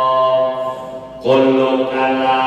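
A man's voice reciting text in a melodic chant, holding long steady notes. It falls away briefly in the middle and comes back strongly about a second and a quarter in.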